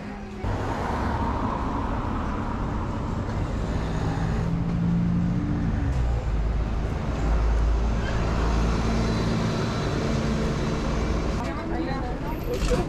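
Busy street traffic with a bus engine running close by: a continuous low rumble with a steady hum that grows louder about halfway through.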